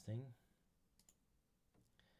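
A single faint computer mouse click about a second in, against near silence.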